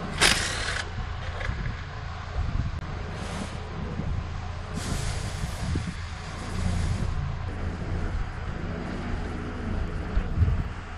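Air tool hissing in three bursts as it spins out inlet manifold bolts: a short burst at the start, a brief one about three seconds in, and a longer one of about two seconds midway, over a steady low hum.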